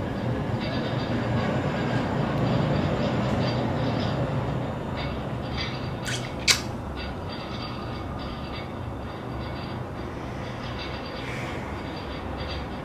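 Low rumbling background noise that swells over the first few seconds and then slowly fades, with one sharp click about six and a half seconds in.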